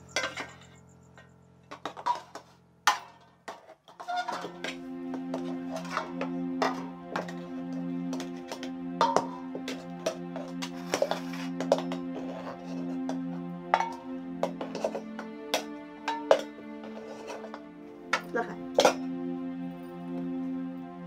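Metal ladle and metal bowls and plates clinking and scraping as cooked rice is served, in sharp, irregular clinks. Soft, sustained background music comes in about four seconds in and carries on under the clinks.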